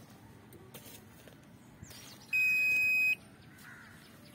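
Electronic beep from an Aquameter CRM 50 groundwater resistivity meter: one steady high-pitched tone, a bit under a second long, a little over two seconds in, marking a resistivity reading.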